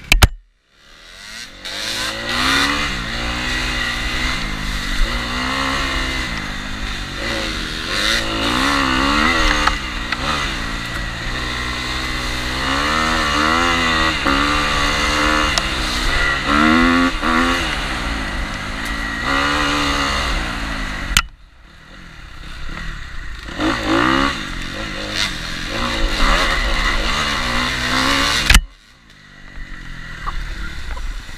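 Dirt bike engine riding hard on a rough trail, its pitch rising and falling again and again with throttle and gear changes. It drops off briefly about two-thirds of the way through and again near the end.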